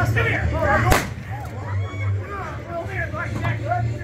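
A single sharp crack about a second in: a stage revolver firing a blank. It rises over a low steady hum, with actors' voices before and after it.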